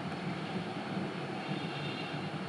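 Steady background noise in a pause between spoken sentences, strongest low down, with no distinct events.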